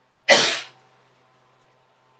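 A man sneezing once: a single short, loud burst about a quarter of a second in that fades within half a second.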